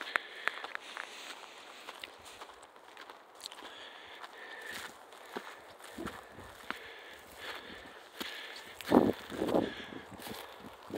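Footsteps crunching over dry grass, twigs and stony ground, irregular sharp crackles thickest in the first second. Two louder sounds about half a second apart near the end stand out above the steps.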